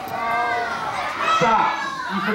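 Many children's voices calling out at once, overlapping into a loud jumble.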